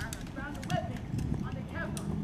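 Several high voices shouting over one another, with scattered sharp clicks and knocks among them.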